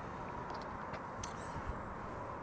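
Faint steady outdoor background noise, with a couple of light clicks a little over a second in.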